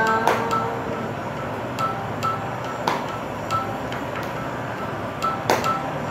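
A child's sung note held steady, ending about a second in, then a pause in the singing filled by a soft accompaniment of short, high pinging notes, with three sharp clicks.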